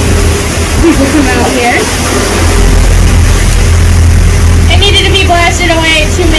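Tour boat's engine running with a steady low rumble under a rush of wind and water on the microphone, while voices talk briefly over it.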